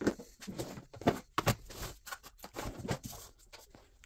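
Hands setting a digital kitchen scale down on a workbench and switching it on: irregular knocks, clicks and rustles.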